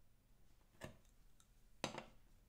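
Near silence with two light clicks, a faint one just before a second in and a sharper one near the end: a clear acrylic stamping block being handled and set down on a wooden desk.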